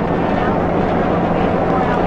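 Steady drone of a light propeller airplane in flight: an even rush of noise with a low hum underneath.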